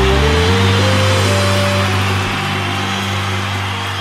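Live band letting the song's final chord ring out, its low bass notes held steady and slowly fading, under a dense wash of crowd cheering and applause.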